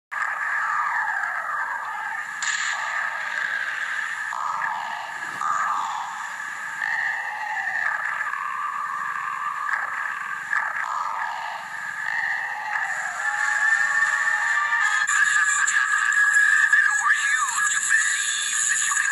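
Video game music playing from a TV speaker, thin and without bass, growing louder near the end.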